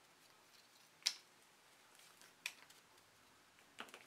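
Hands untying the drawstring of a cotton bag and pulling off a rubber bracelet: three faint, sharp clicks, the sharpest about a second in, over soft handling noise.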